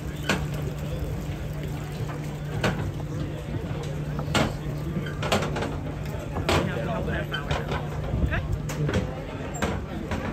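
Background chatter of people talking, over a steady low hum, with scattered sharp clicks and knocks.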